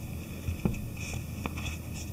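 Packaging being handled as a foam insert is pulled out of a cardboard box: faint rubbing with a few small clicks, around half a second in and again at about one and a half seconds.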